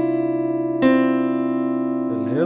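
Electronic keyboard with a piano sound, played slowly in C major. A chord rings on, and a new note is struck a little under a second in and held.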